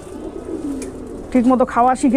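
Domestic pigeons cooing in their cages, a low, soft sound through the first second or so before a man's voice comes in.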